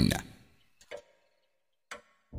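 A narrator's voice trails off, then two faint clicks about a second apart in otherwise near silence.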